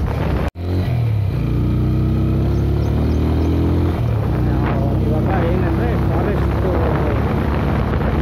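Motorcycle engine running at a steady pace while riding, with wind noise on the microphone; the sound cuts out for an instant about half a second in, then the engine note carries on.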